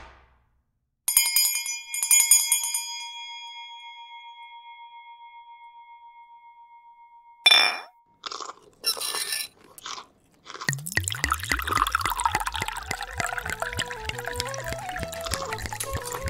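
A bell struck twice, its tone ringing on and fading slowly for several seconds. Then a sharp clatter and a few short noisy sounds, and music with a bass line begins about two-thirds of the way through.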